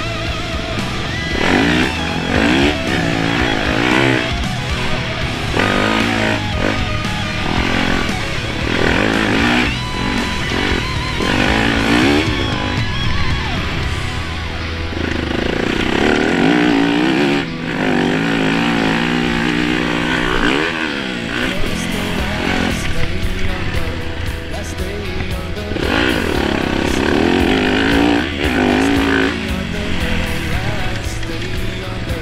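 2014 Yamaha YZ250F's 250 cc four-stroke single-cylinder engine revving up and down over and over as the dirt bike is ridden hard, with background music mixed under it.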